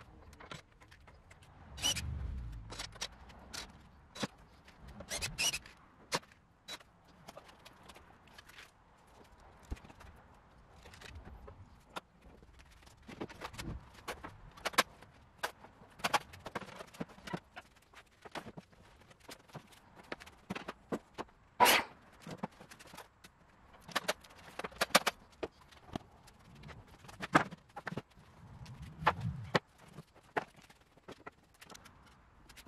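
Scattered knocks and clatter of wooden boards and tools being handled while the cart is assembled, with a low thump about two seconds in and a sharp knock, the loudest, a little past the middle.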